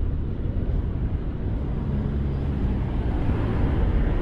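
A car overtaking a cyclist close on the left: its engine hum comes in about halfway through over the steady low rumble of riding noise.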